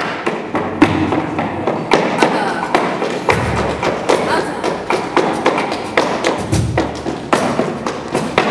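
Live flamenco performance: guitar and singing with many sharp, irregular percussive strikes several times a second.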